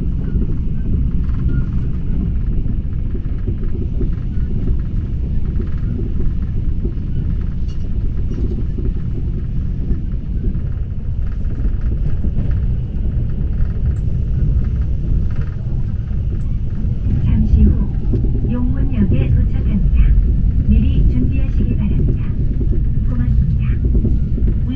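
Steady low rumble of a Mugunghwa passenger train running at about 140 km/h, heard from inside the carriage.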